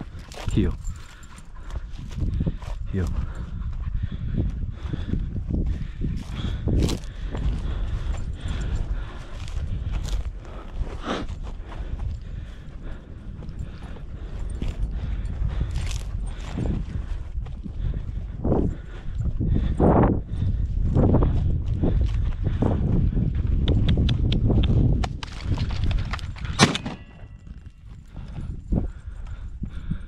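Footsteps crunching through dry sagebrush and stony ground as a person walks, in irregular steps, over a low rumble of wind on the microphone.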